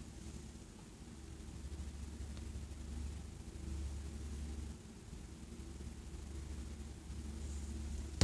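Quiet room tone: a low steady hum with a faint hiss.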